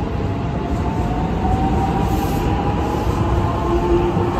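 JR West 223 series 6000 electric multiple unit accelerating out of the station and running past, with steady rumbling running noise. Over it its VVVF inverter traction motors whine, a tone rising slowly in pitch as the train gathers speed.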